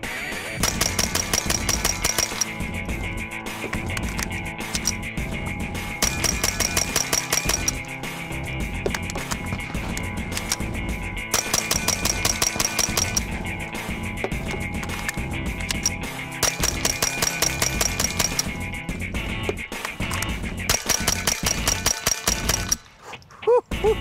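Rapid semi-automatic fire from a Magnum Research MLR .22LR rimfire rifle: five strings of about ten quick shots each, roughly five shots a second. Each string is separated by a pause of a few seconds for a magazine change. Background music runs underneath.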